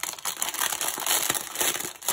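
Clear plastic packaging crinkling continuously as a stack of wrapped card kits is handled in the hands.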